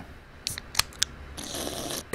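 Movement and handling noise: three short sharp clicks about half a second to a second in, then a soft rustle near the end.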